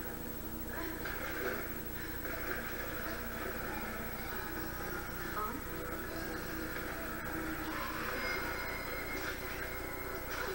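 Television show audio playing in the room, picked up faintly and muffled: a steady soundtrack bed with indistinct dialogue.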